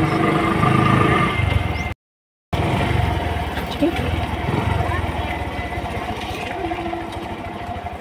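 Motorcycle engine running steadily under way, heard from on board. The sound cuts out briefly about two seconds in and eases off a little near the end.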